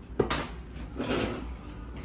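Plastic toy fruit and a plastic toy shopping cart being handled: a sharp knock about a fifth of a second in, then rubbing and scraping.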